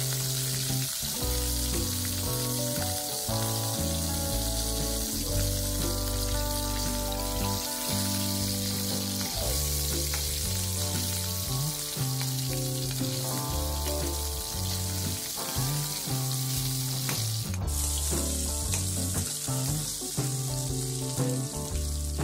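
Fish roe frying in hot oil in a pan, a steady sizzle throughout. Background music with held low notes plays under it.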